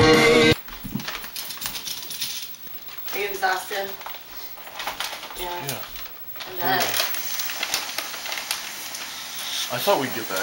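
Rock music with guitar cuts off suddenly about half a second in. Faint, indistinct talk follows in a small room, with scattered clicks and rustling near the end.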